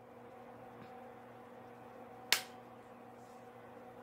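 A single sharp plastic click about two and a half seconds in, from a makeup compact being snapped open, over a faint steady hum.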